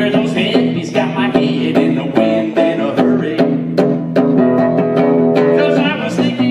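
Live country song: a male singer with a strummed archtop guitar, chords struck in a steady rhythm, his voice coming in near the start and again near the end.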